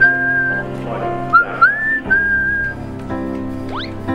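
A cartoon character whistling a cheerful little tune of held notes and short upward slides, over light background music, with a quick rising swoop near the end.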